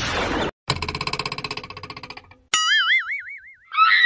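Edited-in cartoon sound effects: a brief hiss, then a fast run of repeated pulses that dies away, then a springy 'boing' with a wobbling pitch starting about two and a half seconds in, and a short squeaky effect at the very end.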